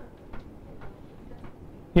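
A few faint, scattered ticks and light taps over quiet room tone.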